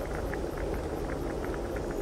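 Steady background nature soundscape: an even wash of noise with faint, irregular small ticks scattered through it.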